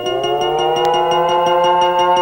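Electronic synthesizer logo music: a chord of tones glides upward and settles into a held chord, over a fast steady pulse.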